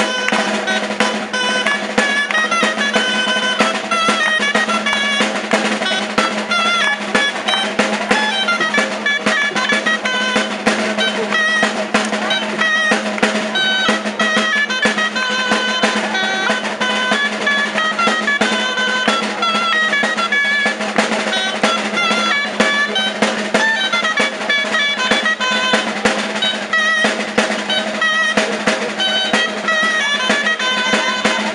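Catalan gralles (folk shawms) playing a lively dance tune, with a quick ornamented melody over a snare-style drum beating and rolling without a break. A steady low note sounds underneath.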